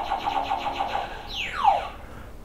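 Synthesized sound effect: a rapidly pulsing electronic tone, then a quick falling pitch sweep about a second and a half in.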